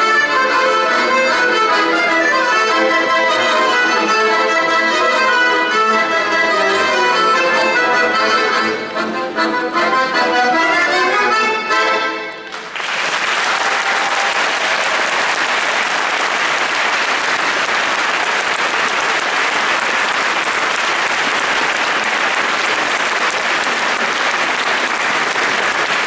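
An ensemble of accordions and bayans plays the final bars of a piece, with many notes sounding together, and stops about twelve seconds in. An audience then applauds steadily.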